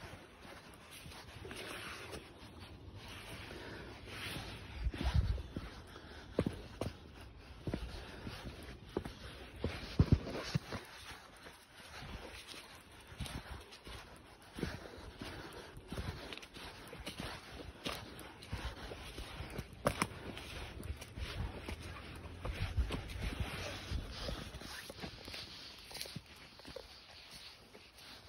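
Footsteps crunching and rustling through dry fallen leaf litter at a walking pace, with occasional low thumps and a few sharper cracks, the loudest about ten and twenty seconds in.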